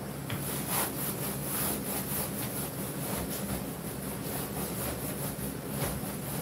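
Paint roller on an extension pole worked back and forth over a vinyl projector screen, a repeated rubbing, scraping sound of quick strokes, about two or three a second, as the screen coating is spread.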